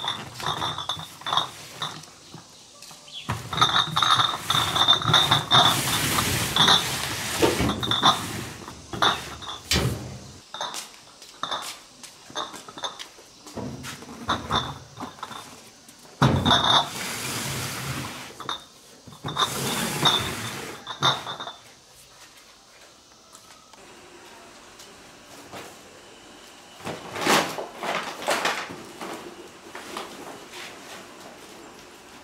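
Empty glass beer bottles clinking inside cardboard cases as the cases are carried and set down on the metal cargo bed of an electric tricycle, with knocks, thuds and cardboard scraping. The handling comes in several busy spells of clatter and rustle, and is quieter for a while in the last third.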